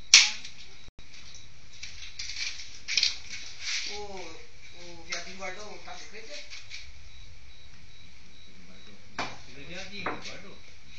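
A sharp clack of pool balls striking each other right at the start, with a smaller knock near the end. Between them, muffled voices talk over a steady hiss.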